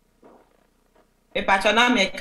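Near silence with a faint short sound, then a woman starts speaking about a second and a half in.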